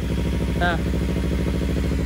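Kawasaki Z300's parallel-twin engine idling steadily, warmed up to operating temperature.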